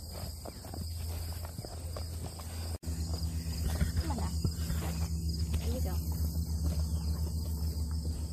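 Insects chirring steadily in the grass over a steady low hum. The sound breaks off sharply about three seconds in, and afterwards the low hum is louder and faintly pulsing.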